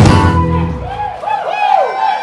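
A live rock band ends a song on one final hit, the guitar chord ringing out and fading away within the first second. Then voices whoop and cheer with rising and falling pitches.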